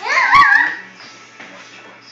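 Great Bernese dog giving one short whining yelp that wavers up and down in pitch and lasts under a second, with a dull thump in the middle.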